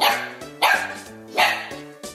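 Dog barking three times, over steady background music.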